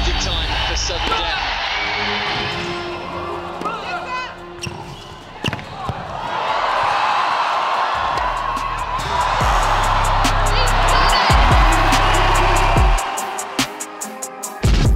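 A tennis rally on an indoor hard court, with sharp racket strikes and ball bounces, then an arena crowd cheering loudly as the final ends. Music with a deep bass line runs underneath.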